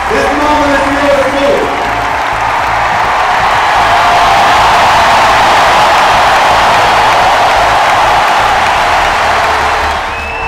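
A packed ballpark crowd cheering and applauding as a player's name is called and he walks onto the field. The roar swells to its loudest midway and eases off near the end.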